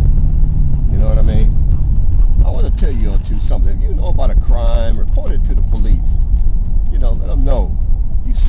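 Steady low rumble of a car's engine and tyres heard from inside the cabin while driving, with a man's voice talking on and off over it.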